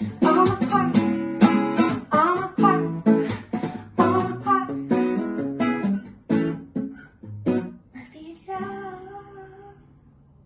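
Acoustic guitar strummed in a steady rhythm that thins out over the last few seconds and ends on a final chord that rings and fades away, closing the song.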